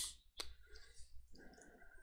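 A single click from a computer keyboard about half a second in, over quiet room tone.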